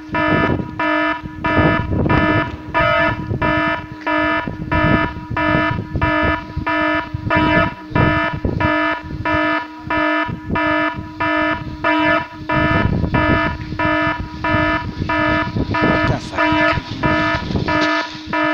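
Electronic security alarm sounding: one harsh pitched tone beeping in an even, unbroken rhythm, a little over two beeps a second. It is the kind of alarm set off by a forced entry.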